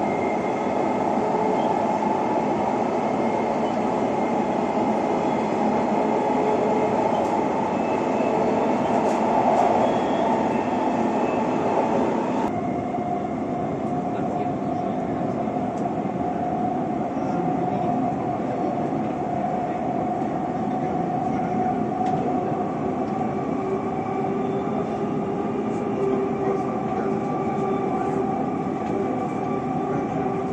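Dubai Metro train running, heard from inside the carriage: a steady rumble and hiss with a few faint steady whines. About twelve seconds in, the higher hiss drops away abruptly.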